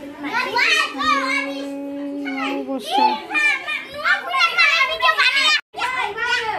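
Several children's voices talking and calling out over one another, with one voice drawn out on a steady pitch for a couple of seconds. The sound drops out abruptly for a moment near the end.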